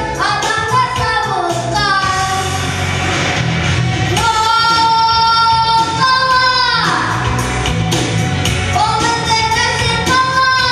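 A boy singing into a handheld microphone over instrumental backing music, holding long notes; a held note about four seconds in slides downward near seven seconds, and another long note begins near the end.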